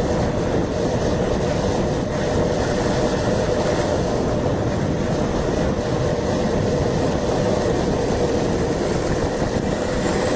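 Skateboard wheels rolling fast on asphalt: a steady, unbroken rumble, mixed with wind noise on the microphone at speed.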